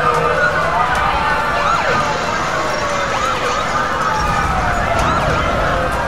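Several emergency-vehicle sirens sounding at once, their pitches sweeping up and down and crossing over one another throughout.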